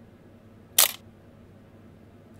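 Camera shutter sound effect: one sharp shutter click about three-quarters of a second in, marking the snapshot freeze-frame.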